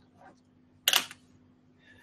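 A quiet pause with a faint steady hum, broken about a second in by one short, sharp click-like noise that dies away quickly.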